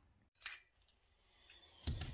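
Faint handling sounds: a brief clink about half a second in, then a louder knock near the end.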